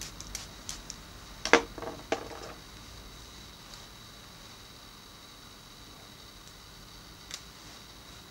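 Spray bottle spritzing water into hair: a few short sprays in the first couple of seconds, the loudest two about a second and a half and two seconds in, then faint room tone with a steady high whine.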